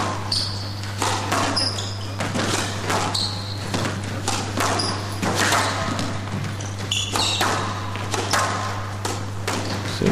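Squash rally: repeated sharp thuds of the ball off rackets and the walls, with short high squeaks of shoes on the court floor, echoing in a large hall.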